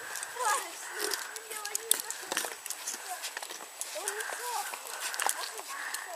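Miniature horses eating carrots scattered on the snow: a run of short, crisp crunching clicks as they chew.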